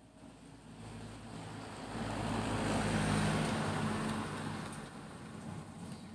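A car driving past, its engine and tyre noise swelling to a peak about three seconds in and then fading away.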